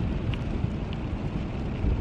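Steady low road and engine rumble inside a moving car's cabin.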